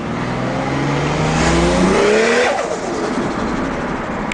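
Toyota 1JZ-GTE turbocharged inline-six, heard from inside the cabin, revving up under acceleration with a rising turbo hiss. About two and a half seconds in, the throttle is lifted: the hiss stops and the revs fall.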